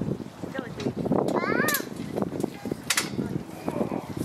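Rattling and handling noise as a black metal arch arbor frame is lifted and shifted by hand, with a couple of sharp knocks. About a second and a half in, a young child gives a brief high-pitched call that rises and falls.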